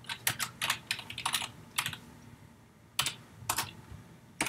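Typing on a computer keyboard: about a dozen irregular keystrokes in quick clusters, with a pause of about a second in the middle.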